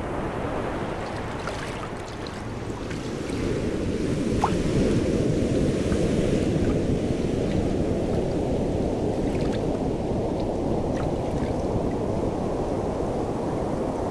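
Ocean surf washing on a beach: a steady rush of waves that swells a few seconds in and then holds.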